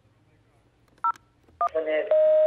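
Two short telephone keypad (DTMF) beeps about half a second apart in the second half, the second running straight into a buzzy phone-line tone: buttons pressed on a studio phone to put a call-in caller on air.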